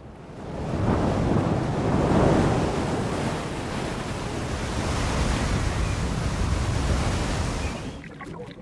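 Rough sea with heavy waves crashing and breaking against a stone harbour wall, with wind. The surging water swells in over the first second or two, is loudest about two seconds in, and eases off near the end.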